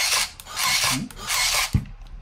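FUMA ZCUT-9GR automatic tape dispenser running its feed and cut cycle: repeated short rasping bursts as tape is drawn off the roll and cut, a little under a second apart, with a sharp knock near the end.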